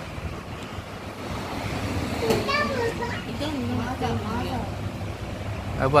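People talking quietly, with a steady low background noise throughout and one short click a little over two seconds in.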